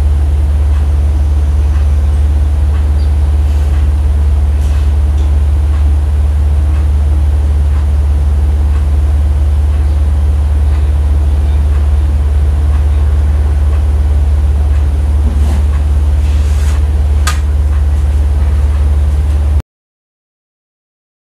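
A steady, loud, deep hum with a few faint ticks, cutting off suddenly just before the end.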